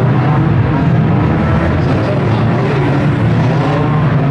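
Several banger race car engines running together in a steady, loud drone.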